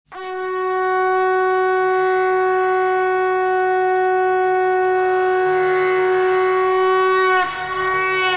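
Conch shell (shankh) blown in one long, steady note, held for about seven seconds and dipping in pitch as it ends near the close.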